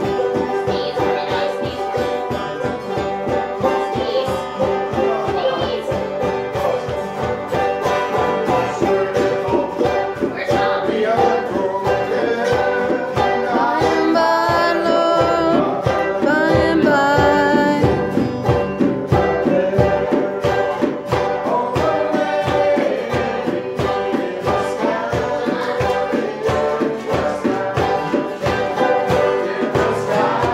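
Live acoustic bluegrass playing: an acoustic guitar strummed in a steady beat, with a banjo and a mandolin picking along. Singing voices come in over the strings, strongest about halfway through.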